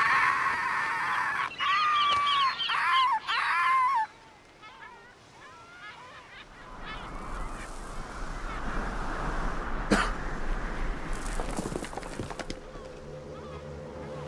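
Cartoon puffin squawking in distress: a long loud cry, then a run of wavering calls over the first four seconds. A rushing noise follows, with a sharp crack about ten seconds in.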